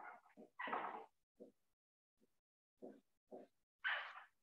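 Whiteboard marker squeaking against the board in a series of short, irregular writing strokes, loudest about a second in and again near the end.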